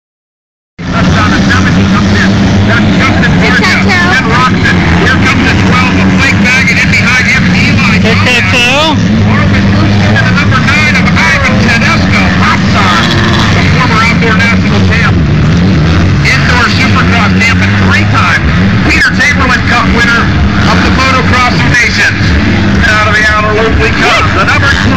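Motocross dirt bike engines racing, revving up and down over a steady low drone, loud throughout, with people's voices mixed in.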